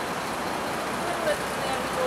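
Steady city background noise with the hum of road traffic, and faint voices of passers-by about a second in.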